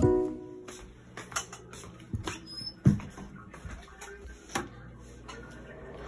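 A music track cuts off at the start, followed by a few scattered soft knocks and clicks at irregular intervals.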